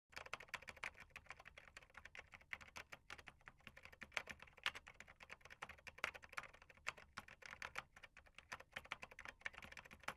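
Faint, rapid keyboard typing clicks, several keystrokes a second in an irregular run, as a sound effect for text being typed out on screen.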